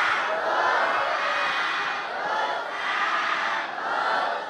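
A large group of voices, the assembled novice monks, calling out together in a loose, overlapping response once the leading monk's chant ends.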